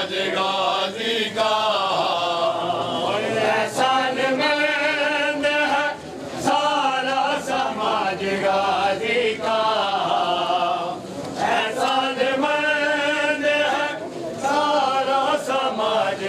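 A group of men chanting a Punjabi noha (van) of mourning together in long sung phrases, with short breaks between them and an occasional sharp slap of hands on chests.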